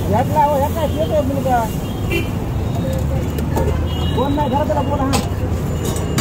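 Busy street-stall ambience: voices talking nearby over a steady low rumble of traffic, with a sharp clink about two seconds in and another about five seconds in.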